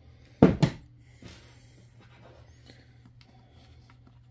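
Two quick knocks about half a second in, then faint rustling and a few small clicks of hands handling tools, screws and the metal mounting plate on a workbench.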